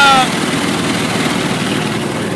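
Go-kart engine running steadily, heard from on board the moving kart.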